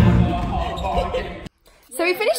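A stage dance number heard from the wings: music and voices with the dancers' feet thudding on the stage floor, fading and then cutting off suddenly about a second and a half in.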